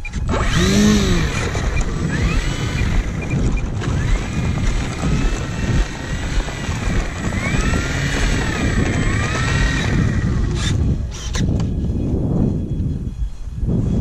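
The electric motor and propeller of an E-flite Carbon-Z Cub SS model plane whining, the pitch rising and falling with the throttle over a rough rumble, heard from a camera mounted on the plane. About ten seconds in the whine dies away, leaving a few sharp knocks.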